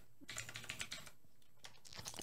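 Faint, irregular keystrokes on a computer keyboard.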